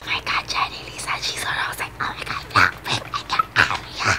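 A woman whispering in short, breathy bursts, very close to the microphone.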